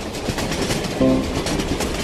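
Cartoon sound effect of a fast, dense rattling clatter as a stream of small balls rolls through clear plastic tubes, with a short musical tone about a second in.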